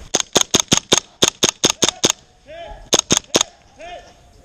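Systema PTW airsoft rifle firing three quick strings of shots, five, five and then three, at about five shots a second. Each shot is a sharp, crisp crack.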